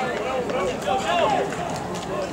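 Men's voices shouting and calling out across a football pitch during play, in raised, carrying calls.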